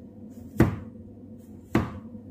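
Two knife chops through bacon onto a plastic cutting board, sharp knocks about a second apart.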